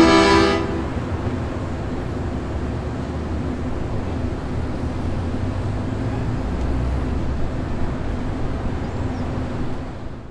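Accordion, setar and zarb music ends in the first second, leaving a steady low rumble of city street traffic.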